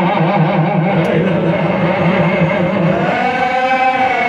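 A man's voice chanting a Sufi zikr into a microphone over a loudspeaker, one long held line whose pitch wavers in quick ornaments, rising near the end.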